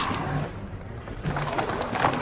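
Film soundtrack of a monster fight: low creature grunts and growls, twice, with a music score underneath.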